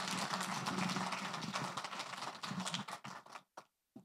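Audience applauding at the end of a talk, the clapping thinning out and stopping about three and a half seconds in.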